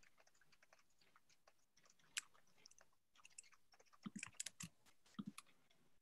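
Faint, irregular clicking of computer keyboard typing, with a few heavier key taps about four and five seconds in.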